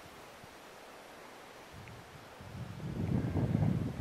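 Wind buffeting the microphone: a low, uneven rumble that comes in about halfway through and grows louder toward the end.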